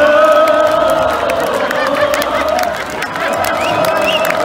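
Large concert crowd cheering and shouting, with scattered claps and a long held, wavering tone running through the noise.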